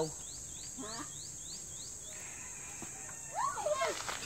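A steady high-pitched insect drone, with a run of short rising chirps, about four a second, over the first two seconds that sound like a bird calling. A man's voice is heard briefly near the end.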